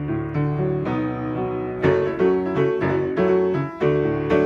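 Solo piano played on a Yamaha keyboard: chords over low bass notes with a melody on top, struck more strongly and louder from about two seconds in.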